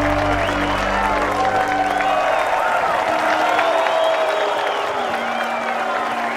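A crowd applauding over background film music. The music's long low held notes fade about a second and a half in, and another comes in near the end.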